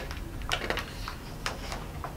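A few light, separate clicks and rustles of paper as the page of a hardcover picture book is handled and starts to turn.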